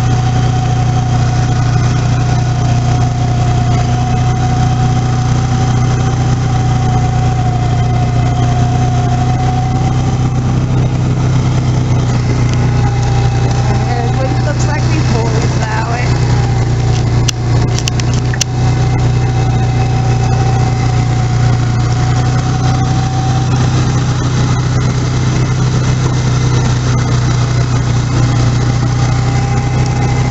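2012 Polaris Sportsman 500 HO ATV's single-cylinder engine running steadily while plowing snow, with a constant low hum and a steady whine over it that wavers slightly. A few sharp clicks come just past halfway.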